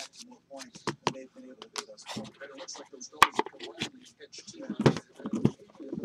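Cardboard box and metal tin being handled: a run of short clicks, taps and scrapes, under a quiet murmuring voice.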